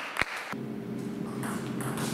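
Table tennis ball clicking sharply once about a fifth of a second in, ending a short series of bounces, followed by a steady low hum.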